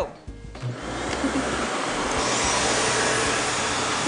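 Upright vacuum cleaners, a Shark Navigator Lift-Away and a competing bagless upright, switched on about a second in and then running with a steady rush of motor and air, which turns brighter about two seconds in.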